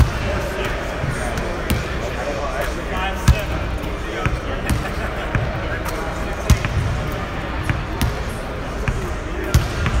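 Basketball being dribbled and bouncing on a hardwood gym floor: a run of sharp thumps, the loudest about three seconds apart.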